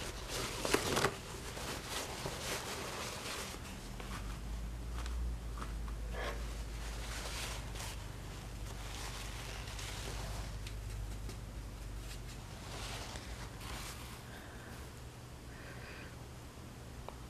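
Quiet room tone: a low steady hum with faint rustles and a few light clicks of handling, loudest about a second in.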